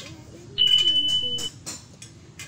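A single high, steady beep lasting about a second, starting just over half a second in, over faint clicks.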